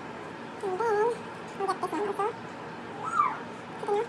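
A dog whining: several short, wavering whimpers, the last one near the end rising and falling.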